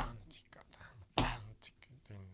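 A man's voice in quiet, breathy half-whispered fragments, with a short click right at the start.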